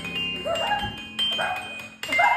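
Glockenspiel played with mallets, its metal bars giving ringing high notes, with short rising voice-like yelps over it.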